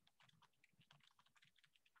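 Near silence with faint, irregular clicks of typing on a computer keyboard.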